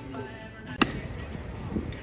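A single sharp pop a little under a second in: a pitched baseball smacking into a catcher's mitt, the catch that starts the pop-time clock.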